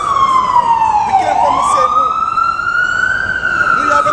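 Emergency vehicle siren wailing loudly. Its pitch slides down to a low point about a second and a half in, swoops back up, climbs slowly, and starts to fall again near the end.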